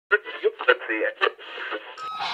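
A person's voice sounding thin and tinny, cut off at both low and high pitches as if heard through a radio or telephone speaker.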